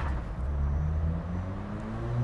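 A motor vehicle's engine running as a low hum, its pitch rising slowly.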